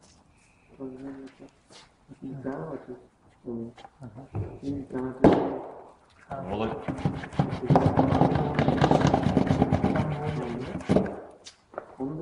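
People talking in a small room, their words not clear, swelling into a louder stretch of several overlapping voices from about six seconds in until near the end.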